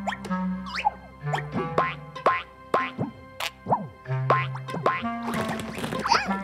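Cartoon boing sound effects for bouncing balls: short springy upward swoops, about two a second, over bouncy children's music.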